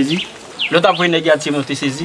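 Speech only: a voice talking in conversation, with a short pause early on and the talk resuming about half a second in.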